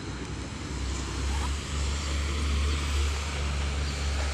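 Distant rumble of an approaching freight train hauled by a Class 185 electric locomotive, growing louder about a second in.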